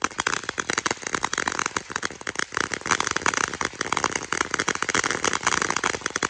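Ground-based consumer firework fountain throwing crackling sparks: a dense, rapid crackle of many small pops.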